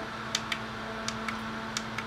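Steady hum of a small square cooling fan spinning at about 3,400 rpm, with four or five light clicks from the handheld laser tachometer's buttons as it steps through stored readings.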